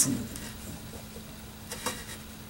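Faint rubbing of a cotton rag, wet with rubbing alcohol, worked back and forth along acoustic guitar strings to clean them, with a brief click near the end.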